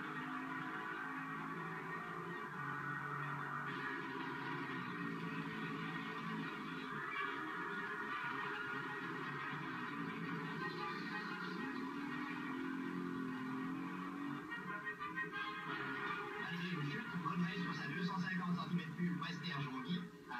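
Newsreel background music, heard through a television's speaker.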